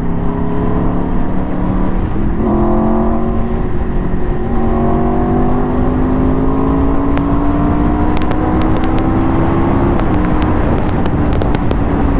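Aprilia RSV4 RR's 999 cc V4 engine pulling hard under acceleration, its pitch climbing slowly in long pulls with a brief break about two seconds in, over steady wind rush.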